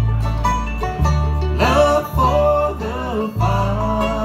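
A bluegrass band playing on banjo, acoustic guitars, fiddle and upright bass, with the bass moving to a new note about once a second and a bending, wavering melody line above it.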